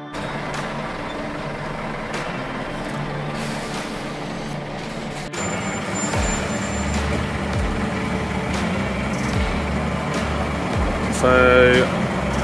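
Scania lorry's diesel engine running at low revs, a steady low rumble, which grows louder and fuller after a cut about five seconds in.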